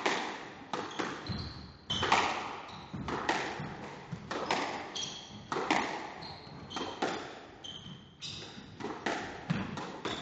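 A squash rally: the ball cracking off rackets and slapping the walls about twice a second, each hit ringing in the enclosed court, with short squeaks of court shoes on the wooden floor between hits.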